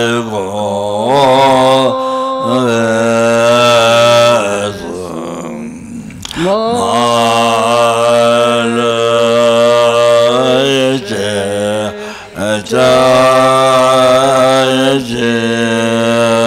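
A Tibetan Buddhist monk's deep voice chanting in long, level notes on a low, steady pitch, breaking off briefly for breath every few seconds.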